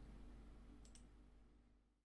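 Near silence: faint room tone with two quick, faint clicks close together about a second in, then the sound fades out to total silence near the end.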